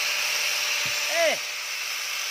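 Electric angle grinder running steadily under load, its disc grinding a little metal off the steel camshaft of a Honda GX390 engine.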